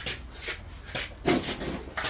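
Rubbing and scraping from a strapped vending machine being shoved and shifted by hand, with a few short knocks.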